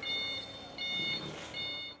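Three high-pitched electronic beeps, each about half a second long and evenly spaced under a second apart.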